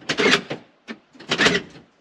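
BMW E36 convertible's central locking operating: two short mechanical clunks of the door lock actuators about a second apart, with a small click between them. The sounds show the newly fitted door lock actuator working.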